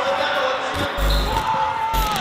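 Voices calling out, with a few deep thuds about a second in and another near the end.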